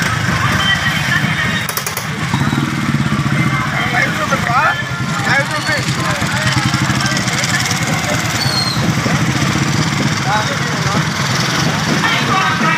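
Several small motorcycles running together at low speed in a procession, their engines making a steady hum, with people shouting over them.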